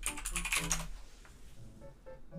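Typing on a computer keyboard: a quick run of key clicks in the first second that trails off, over faint background music.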